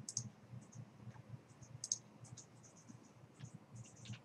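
Faint, scattered clicks of a computer mouse and keyboard in a quiet room over a low steady hum; the sharpest clicks come right at the start and about two seconds in.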